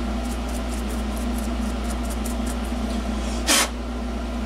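A steady low background hum, with faint light scratching as a small hand tool works on an aluminium capacitor can, and one short rasping scrape about three and a half seconds in.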